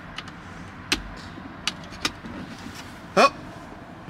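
Several small, sharp clicks and taps, the loudest about a second in, from hands working a wiring connector onto the all-terrain control module inside a car's center console.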